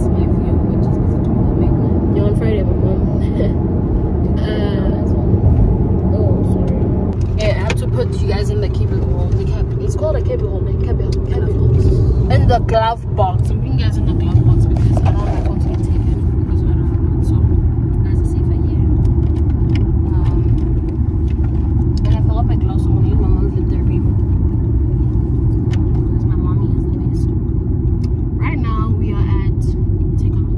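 Steady low rumble of a moving car heard from inside the cabin, the road and engine noise of the drive, with brief snatches of voices now and then.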